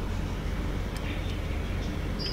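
Steady low background hum with a couple of faint ticks.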